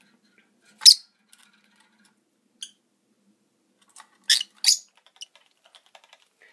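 Rosy-faced lovebirds giving short, shrill chirps: one about a second in, a faint one a little later, and two close together just past four seconds, followed by a few faint ticks.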